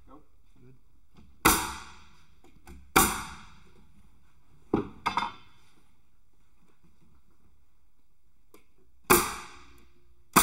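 Pneumatic nailer firing nails into wooden floor framing: two loud shots about a second and a half apart, two lighter ones close together about five seconds in, and another loud shot near the end, each dying away within about half a second.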